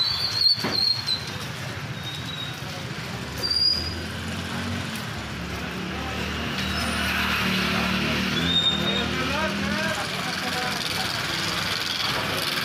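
Busy street noise with voices and passing motor vehicles, one engine growing louder in the middle. Several short, high whistle blasts come through: a longer one at the start, then single short ones about 3.5 s and 8.5 s in.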